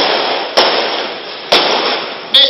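Loud bursts of hissing noise, each starting suddenly and fading over about a second, two of them in quick succession, with no clear voice over them.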